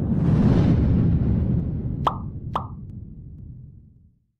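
Animated end-screen sound effects: a low rumbling whoosh that swells in and slowly fades away, with two short pops about half a second apart near the middle as the graphics pop onto the screen.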